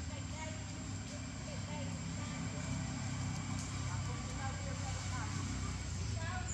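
Baby macaque giving many short, high squeaks and chirps in quick succession, over a steady low hum.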